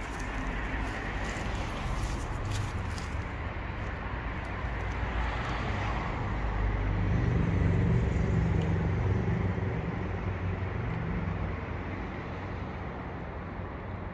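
Outdoor town ambience of road traffic: a steady rumble of cars, swelling as a vehicle passes about halfway through.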